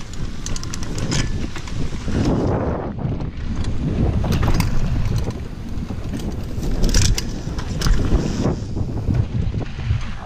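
Mountain bike descending a dirt singletrack at speed: wind buffeting the microphone over the rumble of knobby tyres on dirt, with frequent sharp clicks and knocks as the bike rattles over bumps.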